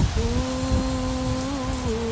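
A woman humming one long held note that lifts slightly near the end, with wind buffeting the microphone underneath.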